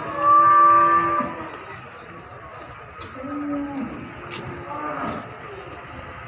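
Cattle mooing: a loud, steady moo in the first second, then a second, quieter and lower moo at about three seconds in.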